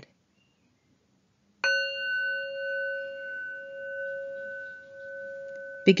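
A singing bowl struck once about one and a half seconds in, ringing on with a slow wavering in its tone and fading gradually.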